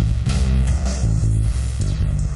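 A rock song kicks in right after a short break: bass guitar and guitar playing with a steady beat.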